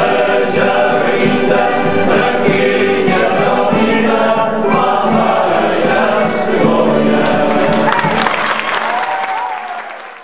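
Men's folk choir singing in harmony with acoustic guitar accompaniment. Near the end the song gives way to clapping, and the sound fades out.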